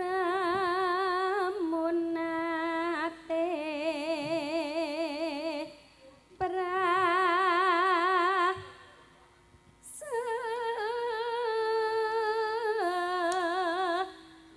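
A Javanese female singer (sinden) singing unaccompanied through a microphone and PA, holding long notes with a wide, even vibrato. She sings three phrases, with a short breath about six seconds in and a longer pause about nine seconds in.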